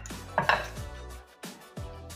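A brief clatter of a fork against a plate, about half a second in, over background music with a deep, repeating bass beat.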